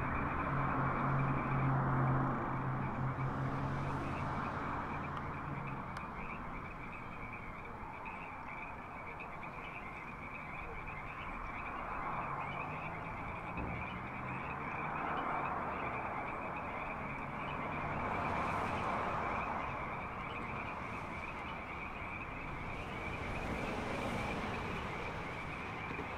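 A steady, high-pitched, fast-pulsing chorus of night-calling animals runs throughout, over a wash of distant highway traffic that swells and fades several times. A low hum fades out in the first few seconds.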